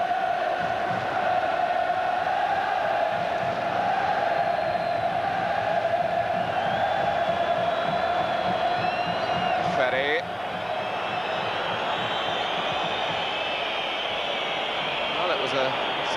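Large football stadium crowd chanting in unison, a steady massed chant that eases off about ten seconds in, with thin high whistles over it.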